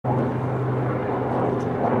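A steady low mechanical drone with an even hum, like an engine running at a distance.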